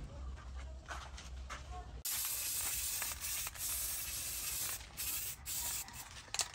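Aerosol spray can hissing as it sprays onto a steel knife blade. It starts suddenly about two seconds in and runs in long bursts with a few brief breaks.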